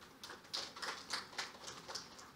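Scattered light hand-clapping from a few people in the audience, faint and uneven, about three or four claps a second, acknowledging a guest whose name has just been read out.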